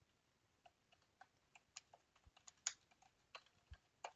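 Faint keystrokes on a computer keyboard: a run of light, irregular taps as a word is typed.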